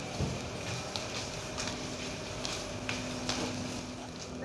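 Footsteps on a tiled floor, a few light taps, over the steady background hum of a covered market hall.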